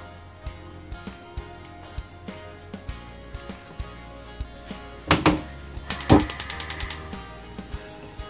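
Background music, with a couple of knocks about five seconds in. Then about a second of rapid, evenly spaced clicking from a gas hob's spark igniter as the burner is lit or the flame is turned down.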